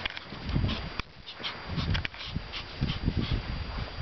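Pomeranian puppy snuffling and moving about right at the microphone, with irregular dull thumps and small clicks as it bumps and paws close by.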